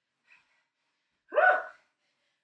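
A woman breathing hard from exertion: a faint breath, then a short voiced gasp about one and a half seconds in.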